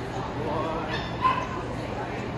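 A dog gives a single short, high yip about a second in.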